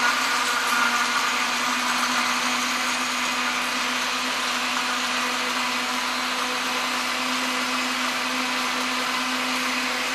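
Countertop electric blender running steadily, puréeing strawberries into a thick red liquid, with a constant motor hum under the whirr of the blades.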